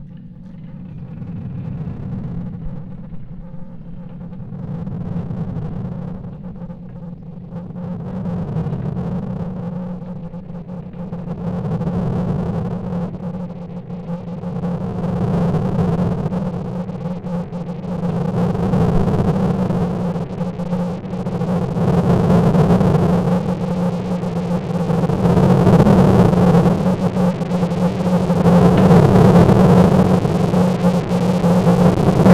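Designed sci-fi soundscape: a steady low drone that swells and fades about every three to four seconds, growing louder and brighter throughout, with a noisy hiss building up in the second half.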